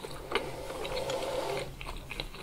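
Close-miked chewing of a fish cake with the mouth closed: a wet click about a third of a second in, then about a second of rapid, buzzy, squishy mouth sounds.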